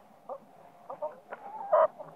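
Chickens clucking: a few short clucks, then a louder, longer call near the end.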